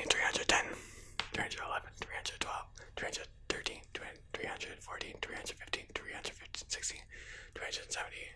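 A man whispering, counting out numbers one after another.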